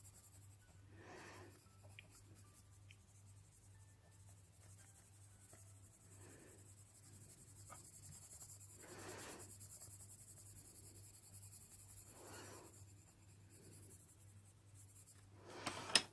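Faint scratching of a Polychromos coloured pencil on paper, laid on lightly without pressing, in a few soft separate strokes.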